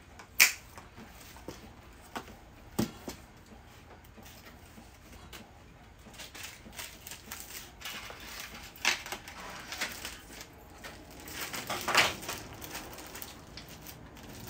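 Packing-table handling noise: plastic bags and wrappers rustling and crinkling, with light clicks and knocks as small items are picked up and set down. It comes in irregular bits, with the loudest rustle about twelve seconds in.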